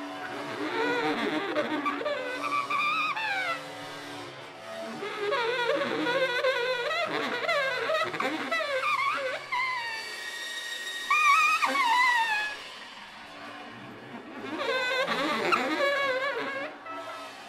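Free-improvised music for baritone saxophone and percussion: squealing, wavering high pitches that bend and slide, with a stick worked against a cymbal. It comes in swells with quieter stretches between them.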